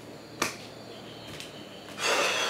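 Rubber flip-flop slapping on a tiled step as it is stepped out of: one sharp slap about half a second in, then a fainter tap about a second later.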